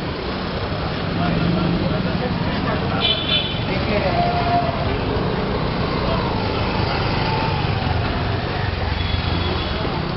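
Busy street traffic: motorcycle and auto-rickshaw engines running in a continuous loud din, with short horn toots about three and four seconds in, and voices of people around.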